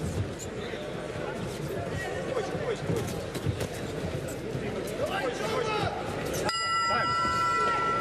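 Arena crowd voices shouting during a boxing round. About six and a half seconds in, a steady pitched signal tone sounds and holds for about two seconds: the signal ending the first round.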